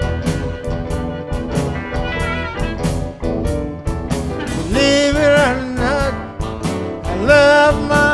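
Electric blues band playing an instrumental passage: drums, bass and electric guitar under a harmonica. The harmonica holds long, bending notes about five seconds in and again near the end.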